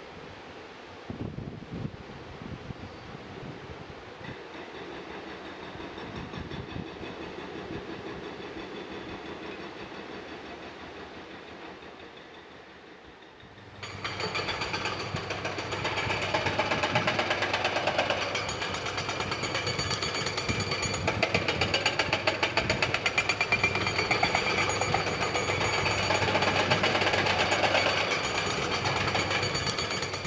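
Heavy demolition machinery running, with rapid, even hammering. It steps up suddenly and becomes much louder about fourteen seconds in.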